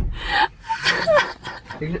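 A thump at the very start, then a person's breathy gasp lasting about half a second, followed by short vocal sounds running into speech near the end.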